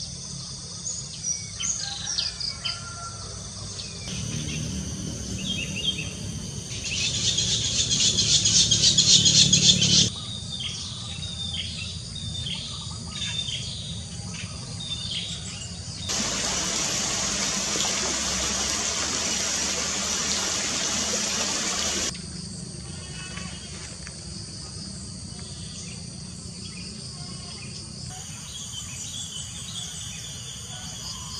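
Wild birds chirping with repeated short falling calls, over a loud pulsing insect buzz a few seconds in. In the middle, a steady rush of water from a small stream running over rocks cuts in for about six seconds, then stops suddenly, leaving quieter bird calls.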